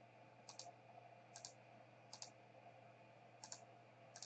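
Faint computer mouse clicks, about four quick double clicks spread a second or so apart, as a list is pasted into a spreadsheet from a right-click menu; otherwise near silence.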